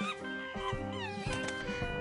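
Background music with steady held notes, and a brief high squeaky glide about a second and a half in.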